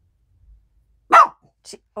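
A dog barks once loudly about a second in, followed by a fainter short bark, alerting to someone arriving home.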